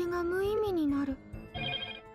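A female anime character's voice drawing out one syllable, its pitch rising and then falling over about a second, over soft background music. Near the end comes a short, high, chime-like sound.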